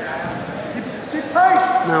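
Low gym hubbub of voices and mat noise, then a man's loud, high-pitched shout from about a second and a half in.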